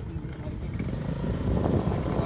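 Wind buffeting the phone's microphone: a low, rough rumble that grows louder toward the end.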